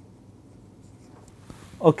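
Faint scratching and tapping of a stylus writing on a tablet screen. A man's voice starts speaking near the end.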